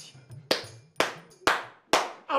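Four sharp percussive hits in the background score, evenly spaced at about two a second, each with a short ringing tail, over faint music.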